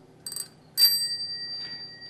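A small metal bell rung twice: a short first ding, then a sharper strike whose high ring dies away slowly over more than a second.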